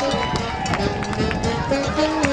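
A live New Orleans-style jazz and blues band playing, a saxophone leading over a walking bass and drums keeping a steady beat.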